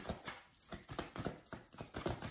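A tarot deck being shuffled by hand: a run of quick, irregular clicks and taps of cards against each other.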